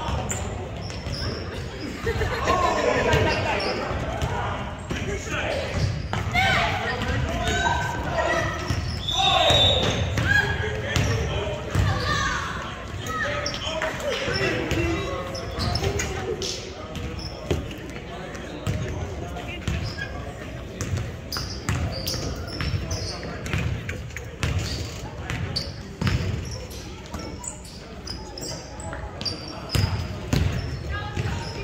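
A basketball bouncing and dribbling on a hardwood gym floor, sharp repeated thuds that echo in a large hall, with players' voices calling out over them, most in the first half.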